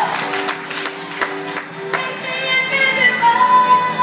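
A woman singing a worship song into a microphone over instrumental accompaniment, with long held notes that glide in pitch. Some sharp crowd noise from the congregation comes in the first two seconds.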